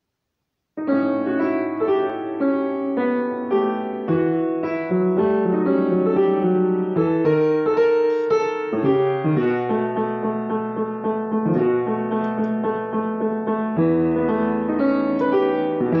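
Piano played with both hands, a melody over changing chords, starting suddenly about a second in.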